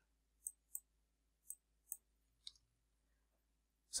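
Five faint, scattered clicks from a computer keyboard and mouse against near silence.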